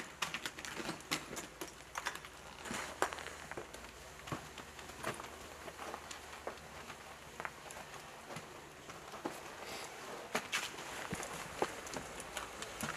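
Scattered, irregular clicks and knocks from rappelling: boots and metal climbing hardware striking a stone-block wall, and rope being handled, with a sharper knock about three seconds in and a cluster near the end.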